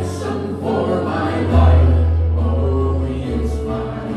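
A church worship band playing a gospel worship song: men and women singing together over strummed acoustic guitars and a keyboard with held low bass notes.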